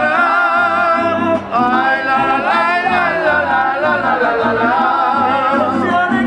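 Mariachi band playing: a man sings long held notes with a wavering vibrato over a steady strummed guitar rhythm.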